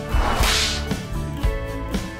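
Background music with a steady beat, with a whoosh transition sound effect sweeping up and falling away about half a second in.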